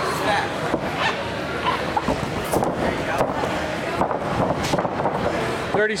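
Indistinct voices of coaches and spectators calling out around the ring, with a voice calling "30 seconds" at the very end.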